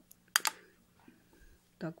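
Small plastic Lego pieces being pressed and snapped together: a quick pair of sharp clicks about half a second in.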